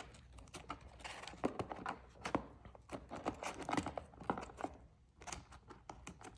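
Baseball cards in rigid plastic top loaders clicking and rustling against one another as fingers flip through a packed row of them in a cardboard box: a quick, irregular run of light clicks.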